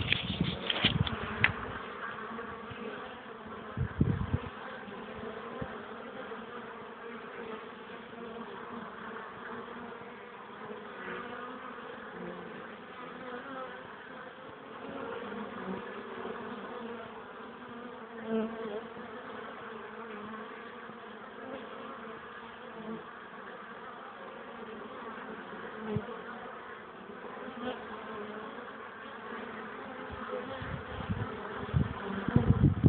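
Honeybees of a top-bar hive colony buzzing steadily, many bees on the wing at once. A few knocks in the first second and one more at about four seconds.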